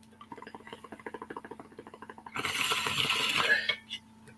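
Glass water pipe (bong) bubbling as it is drawn on: a rapid run of small bubbling pops through the water, then, about two and a half seconds in, a louder rush of air lasting over a second.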